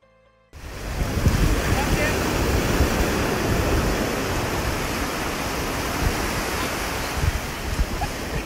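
Ocean surf washing ashore with wind buffeting the microphone, a loud, gusty rush of noise that cuts in suddenly about half a second in.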